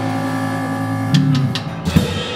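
Live jazz band playing: electric guitar over bass, drums and keyboard, with held notes and sharp drum hits about a second in and again near the end.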